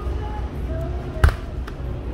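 Handling and walking noise from a handheld phone moving through a supermarket: a steady low rumble with faint voices or music behind it, and one sharp thump a little past a second in.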